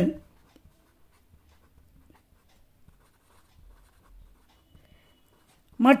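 Pen writing on paper: faint, irregular small strokes and ticks as words are written out by hand.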